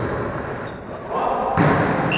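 A volleyball thump about one and a half seconds in, with players' voices in the gym hall.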